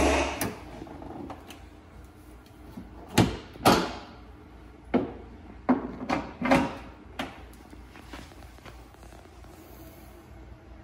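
A 2019 Ford Mustang Bullitt's hood being opened: a sharp click as the latch releases, then several clunks and rattles, grouped together a few seconds later, as the hood is raised and set on its prop rod.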